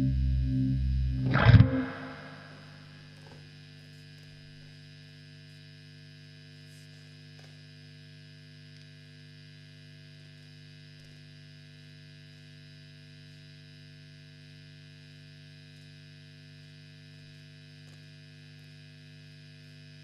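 Down-tuned electric guitar playing with a pulsing vibe effect ends with a loud final hit about a second and a half in. After that, a 1964 Fender Vibroverb tube amp hums steadily with mains hum and nobody playing.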